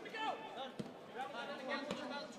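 Faint, distant voices calling out across a football pitch, over low crowd chatter.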